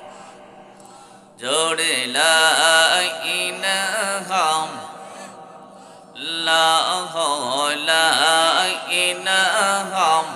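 A man chanting Islamic zikir into a microphone in long, melodic sung phrases. One phrase starts about a second and a half in, and a second one starts about six seconds in after a short pause.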